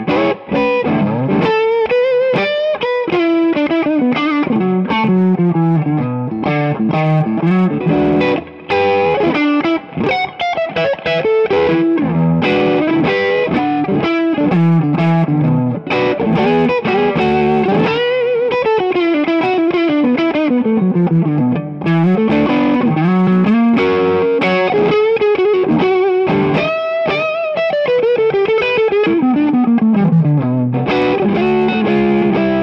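Josh Williams Mockingbird, a 335-style semi-hollow electric guitar, played on its neck pickup through overdrive: a continuous run of single-note lead lines, with notes sliding and bending in pitch between sustained ones.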